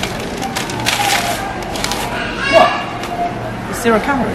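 Supermarket background: indistinct shoppers' voices and store hubbub over a low steady hum, with one louder voice rising in pitch about two and a half seconds in.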